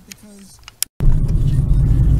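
Steady low rumble of a car's engine and road noise heard inside the cabin, starting suddenly about a second in after a faint voice and a click.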